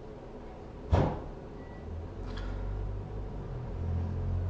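A single thump about a second in, then a low rumble over faint room tone.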